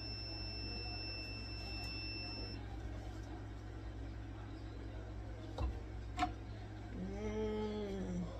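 Heat press timer alarm sounding one steady high beep that cuts off about two and a half seconds in, signalling the end of the press cycle. A couple of sharp clicks follow as the press is handled and opened, over a steady low hum.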